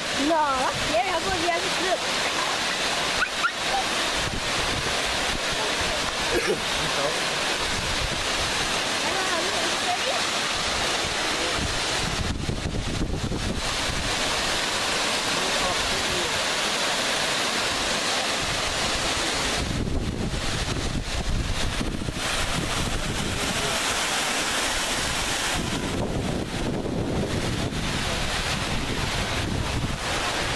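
Waterfall cascading down granite boulders: a steady rush of falling water.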